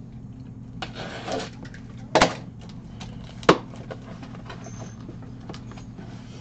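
A cardboard box being opened by hand: the packing tape is cut and the flaps are pulled apart, with cardboard rustling and two sharp knocks about two and three and a half seconds in, over a steady low hum.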